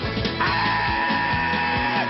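An Irish folk-punk band playing live, with accordion, electric guitar, bass and drums over a steady beat. About half a second in, a held high note comes in and sustains to near the end.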